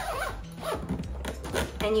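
Zipper on the inflatable dog kennel's fabric back panel being pulled along its track.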